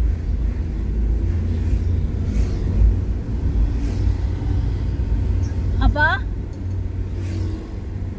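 Steady low rumble of a car's engine and tyres, heard from inside the cabin while driving along the road.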